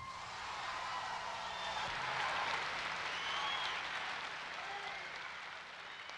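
Concert audience applauding at the end of a song, a steady wash of clapping that swells slightly and then slowly fades.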